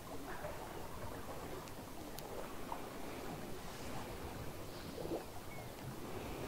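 Faint, steady wind and sea-water noise off the open water, with a few small faint ticks.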